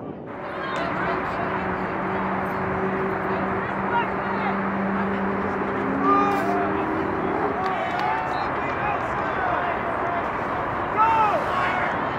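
Crowd and players at a lacrosse game, many voices shouting and calling over one another, with a steady low hum under them for the first several seconds.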